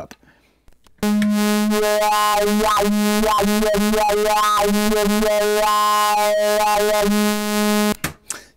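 Moog Labyrinth analog synthesizer with its mod oscillator hard-synced to VCO1, sounding a repeating sequenced pattern with wah-like, vowel-like formant tones. It comes in about a second in, after a brief near silence.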